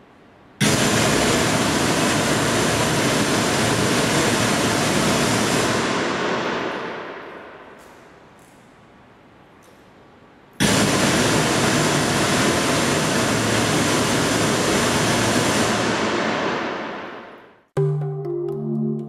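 Two bursts of test noise from a loudspeaker for a reverberation-time (RT60) measurement, each about five seconds long, starting about half a second and ten seconds in. Each stops sharply and leaves the church's reverberant tail dying away over about two seconds, the high end fading faster than the low end. The analyser times this decay to measure the reverberation time.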